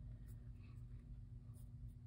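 Faint scratching of a pencil drawing light sketch lines on sketchbook paper, over a low steady hum.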